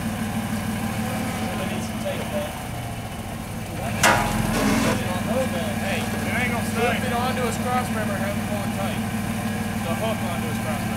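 Lifted Isuzu Trooper's engine idling steadily close by, with one sharp clank about four seconds in and distant voices calling after it.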